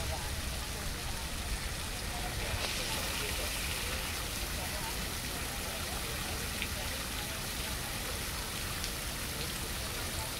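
Steady sound of falling rain, an added raindrop effect, slightly heavier about three seconds in.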